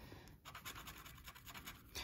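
Faint scratching of a plastic scratcher tool rubbing the coating off a lottery scratch-off ticket, a quick series of short strokes.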